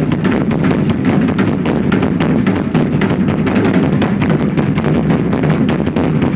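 Rock drum kit played solo: a fast, dense run of tom and bass drum strokes, many a second, with little cymbal.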